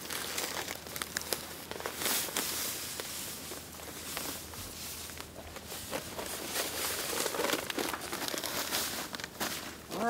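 Playground sand pouring from a plastic bag onto a rifle lying on gravel, a steady hiss with the bag crinkling and rustling as it is tipped and shaken.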